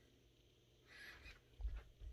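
Mostly quiet room, with a faint airy rustle about halfway through and a soft, dull low thud near the end: handling noise as the phone camera is swung down toward the floor.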